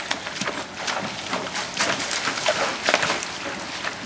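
Tennessee Walking Horses' hooves stepping and splashing in a shallow creek: irregular splashes and knocks, several to a second.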